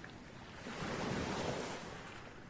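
Sea waves washing in: a steady surf hiss that swells about a second in, then begins to ebb.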